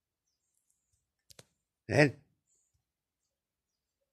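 Two faint clicks, then about two seconds in a single short, loud, low-pitched vocal sound, like a grunt, against near silence.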